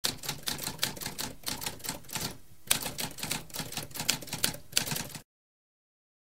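Typewriter keys clacking in a rapid, irregular run of keystrokes, with a brief pause about halfway through, stopping a little after five seconds in.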